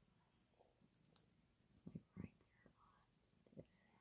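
Near silence: room tone with faint whispering, briefly about two seconds in and again near the end.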